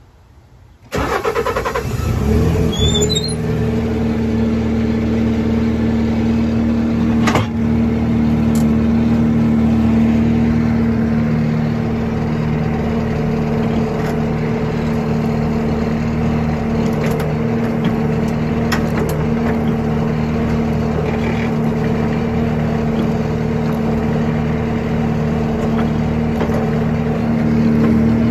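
A skid steer's engine is cranked and starts about a second in, its pitch rising briefly as it catches, then runs steadily. A single sharp click is heard a few seconds after it settles.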